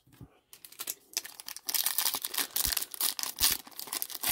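Plastic-foil wrapper of a trading card pack crinkling and tearing as it is opened: a rapid crackle that starts about half a second in and grows denser and louder partway through.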